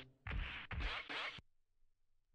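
Two short back-to-back bursts of scratchy noise that cut off abruptly about one and a half seconds in.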